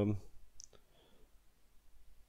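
The tail of a man's hesitant "ähm", then near silence with a faint short click about half a second later.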